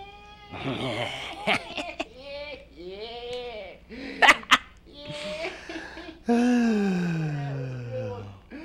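A puppeteer's voice making wordless character noises that swoop up and down in pitch, with two sharp smacks about four seconds in and a long drawn-out groan falling steadily in pitch near the end.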